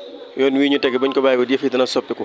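A man's voice speaking, starting about a third of a second in after a short pause.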